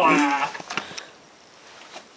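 A long, low vocal moan that falls in pitch and ends about half a second in, followed by a few faint taps.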